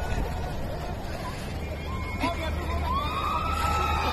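Children's high-pitched shouts and calls, one long drawn-out call starting near the end, over a steady low hum.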